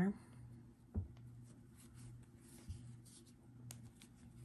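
Faint handling sounds of a metal crochet hook and yarn being worked into the edge of a crocheted piece: soft rubbing, a small knock about a second in and a few light clicks, over a steady low hum.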